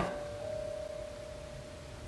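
A faint steady hum-like tone over soft background hiss.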